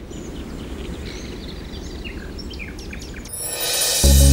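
Birds chirping in short calls over a low, steady background hiss, with a swell of sound rising near the end.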